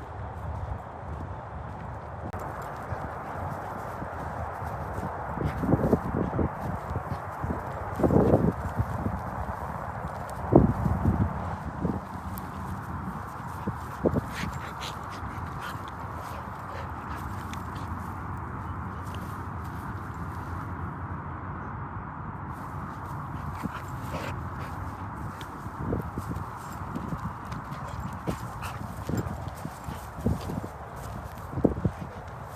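Footsteps of a person and a dog walking along, with a few louder thumps about a third of the way in.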